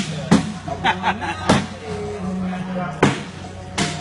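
Cornhole bags landing on wooden boards: several sharp thuds spread over the few seconds, over background music and people talking.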